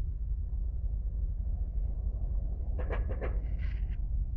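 A steady low rumble, with a brief run of short pitched sounds about three seconds in.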